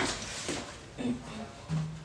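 Low room noise with faint, brief voice sounds, a couple of short murmurs about a second in and near the end.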